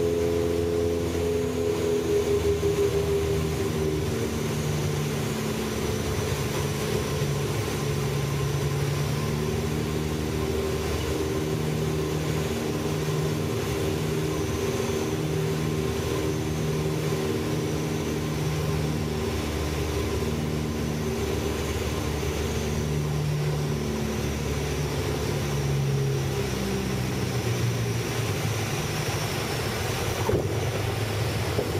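Cabin sound of a Beech 76 Duchess light twin on final approach: its two four-cylinder Lycoming piston engines and the airflow run steadily under a constant wash of noise, with the engine tones shifting in pitch now and then.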